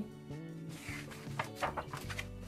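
Background music with steady held notes, while a glossy magazine page is turned by hand: a soft paper rustle just before a second in, then a few short handling taps.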